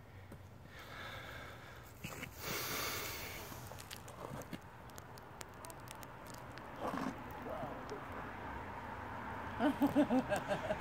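Short, wordless human voice sounds and breaths, with a brief breathy hiss a few seconds in and a quick run of short voiced sounds near the end.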